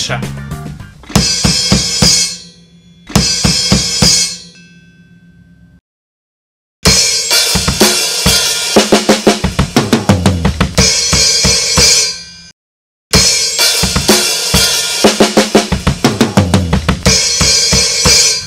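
Drum kit played at a slowed tempo: a metal fill of hi-hat and kick figures, fast runs across snare, toms and double bass pedal, ending in triplets on crash cymbal and bass drum. It comes in separate phrases with short breaks, the crash ringing out at the end of each.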